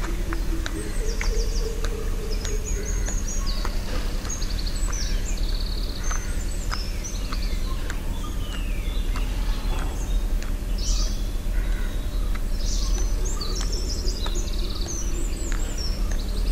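Several birds chirping and trilling in quick short phrases, heaviest in the first few seconds and again in the last few. Beneath them runs a steady low rumble, the loudest part of the sound, with scattered faint clicks.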